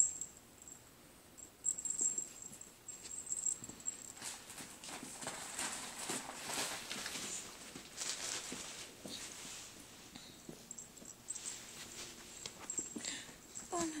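A kitten and a husky-shepherd puppy play-wrestling on carpet: irregular scuffling, rustling and paw patter with small knocks, busiest in the middle.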